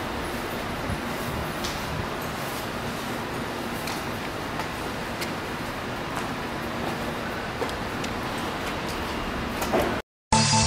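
Steady room noise of a parking garage picked up by the camera's microphone: an even hiss and rumble with a faint low hum and a few faint clicks.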